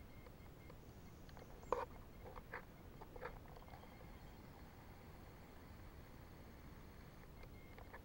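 Near silence: quiet outdoor background with one sharp click about two seconds in and a few faint short sounds just after it.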